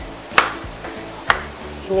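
Kitchen knife cutting ripe mango into cubes on a plastic cutting board: two sharp knocks of the blade meeting the board, about a second apart, over background music.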